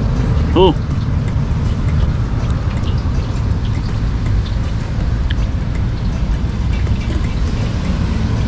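Steady low outdoor rumble at an even level, with a short spoken 'oh' about half a second in.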